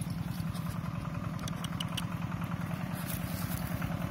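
A steady low rumble with a fast, even pulse, like an engine idling, with a few faint clicks over it.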